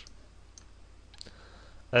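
A few faint clicks of a computer mouse as text is selected on screen.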